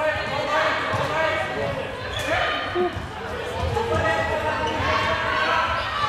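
Live floorball game play in a large sports hall: players' voices calling out over scattered knocks of sticks and ball, echoing in the hall.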